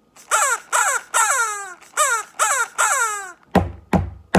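Bird-like calls voicing a blue toucan puppet, each falling in pitch, in a short-short-long, short-short-long rhythm ('tee-tee-ta' twice). Near the end, two sharp hand claps begin echoing the rhythm back.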